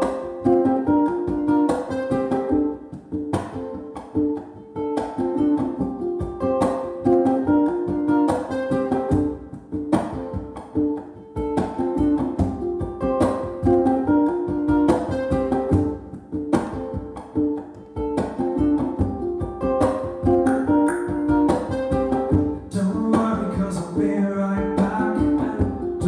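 Acoustic-electric ukulele picking a short melodic riff that repeats over and over, each pass opening with a sharp accent about every second and a half.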